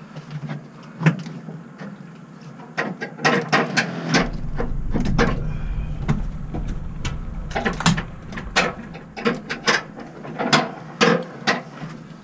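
A boat's engine running slowly, with a deeper rumble that comes in about four seconds in and fades out about four seconds later as the boat is manoeuvred. Irregular knocks and clatter from the aluminium cabin and controls sound throughout.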